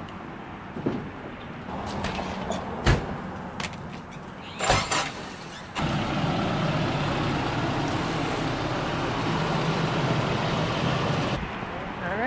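A few knocks and thumps as bags and buckets are set into the bed of a Nissan pickup truck. From about halfway, a steady engine hum follows, the pickup's engine idling.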